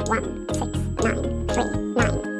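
A man's voice rapidly reciting digits of pi one after another, over background music with steady bass notes.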